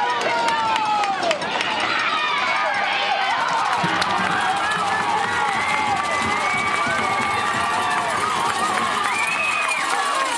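Spectators at a youth football game yelling and cheering as a ball carrier breaks a long run, with many voices shouting over each other throughout.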